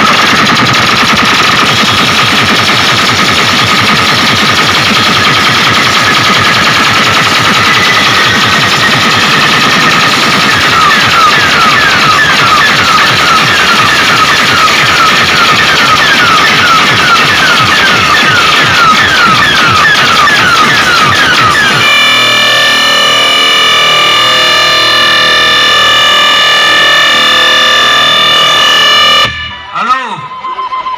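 Loud DJ sound system playing a 'vibration' competition track: rapid-fire hits like machine-gun fire, joined partway through by a repeating falling electronic squeal. About two-thirds of the way in it switches to a held chord of steady electronic tones, which cuts out just before the end.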